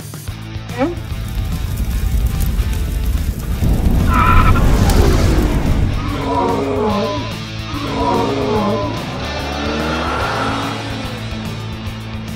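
Edited soundtrack of added sound effects over background music: a low engine-like rumble from the toy car that swells for a few seconds, then a creature's falling cries repeated several times after the cut to the toy dinosaur.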